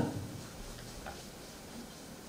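Faint ticks of a marker pen writing on a whiteboard, over quiet room noise.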